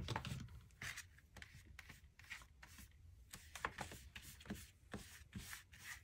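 Flat paintbrush brushing matte medium over a paper napkin laid on paper: faint, irregular soft scratchy strokes.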